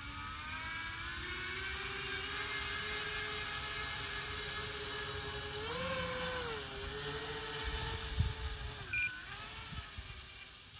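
Twin electric motors and propellers of a radio-controlled floatplane whining as it taxis across snow on its floats. The pitch rises as the throttle comes up, swells briefly about six seconds in, and drops near the end. A single knock comes about eight seconds in, followed by a short high beep.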